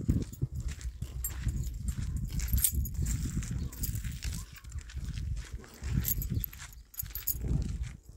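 Wind buffeting a phone microphone, an irregular low rumble, with footsteps and scuffs on paving stones as the recorder walks.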